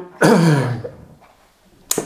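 A man's short throat-clearing sound, voiced and falling in pitch, then a pause and a small mouth click just before he speaks again.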